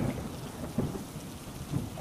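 Storm sound effect: steady rain falling with a low rumble of thunder.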